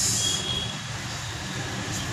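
A steady low mechanical hum fills the pause, with a short high hiss at the very start.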